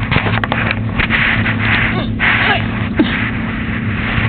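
Rustling and handling noise from a phone camera being moved around on a bed, over a steady low hum.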